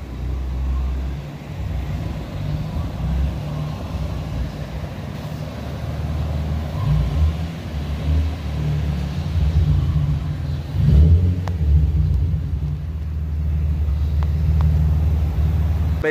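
Nissan 350Z's VQ35DE V6 engine running as the car is driven slowly, a steady low rumble that grows louder about eleven seconds in.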